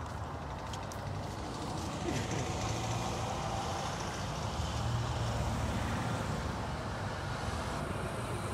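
Heavy vehicle engines and traffic running steadily. A deeper engine drone swells a couple of seconds in and again about five seconds in.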